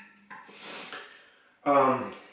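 A person's breath: a short rush of air through the nose or mouth about a third of a second in, then a brief, loud voiced sound near the end, between mouthfuls of food.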